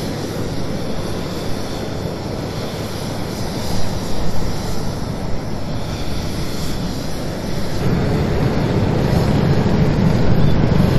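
Steady low rumble of engines on an open airfield, mixed with wind noise on the microphone, growing somewhat louder near the end.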